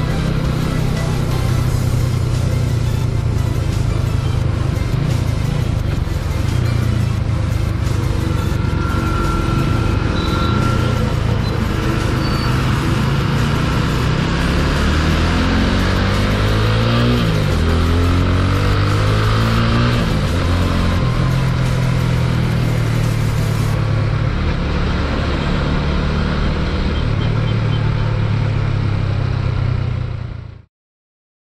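TVS Apache 200 single-cylinder motorcycle engine running at road speed, with wind rushing over the microphone; the engine note rises and falls several times in the middle.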